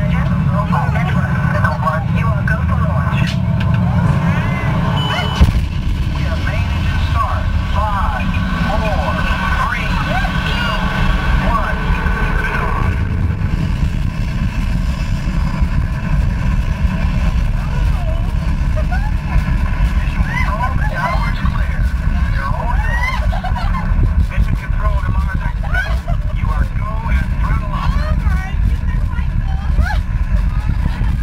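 Simulated rocket-launch rumble played through a ride capsule's speakers, a heavy steady low noise, with riders' voices over it. A single sharp knock stands out about five seconds in.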